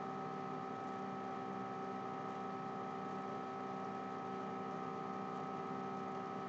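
Steady electrical hum made of several constant tones, unchanging throughout.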